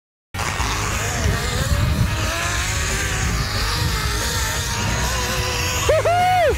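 Silence for a moment, then a zip-line trolley running along the cable: a steady whir with a wandering whine over a low rumble. A person's loud yell starts at the very end.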